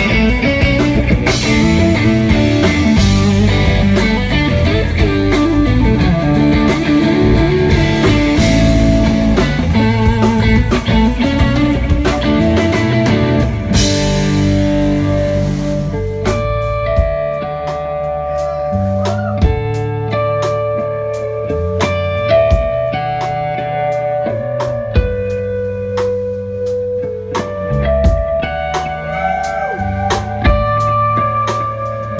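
Live instrumental rock trio: overdriven electric guitar lead over bass and drums, dense with cymbals for the first half. About halfway through the band thins out and the guitar plays clear ringing held notes that step between pitches, in the manner of cascading harmonics.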